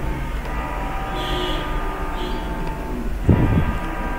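Steady background hum with several constant tones, the noise floor of the recording. A brief vocal sound comes about three seconds in.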